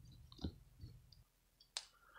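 A few faint, short clicks, the sharpest just before the end.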